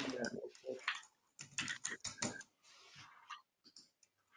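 Typing on a computer keyboard: a quick run of clicking keystrokes entering a short word, with a brief pause near the end.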